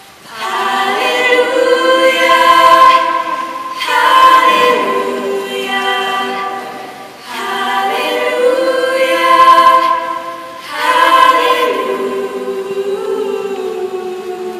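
Female voices singing a slow piece in four long, swelling phrases, accompanied by a school string ensemble of violins and cellos.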